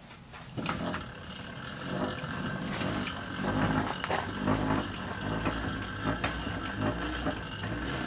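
Cranked generator on a hydrogen-generator demonstration rig whirring and humming as it is turned, with repeated knocks from the drive. It starts about half a second in and keeps going, making current to split water into hydrogen.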